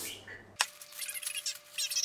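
Plastic bag of salad greens crinkling as it is handled, in quick irregular crackles that start abruptly about half a second in.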